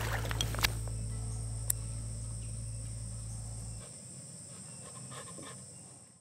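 Steady high-pitched insect chorus, with a low held music note underneath that stops about four seconds in and a sharp tick just before the two-second mark; everything fades away at the end.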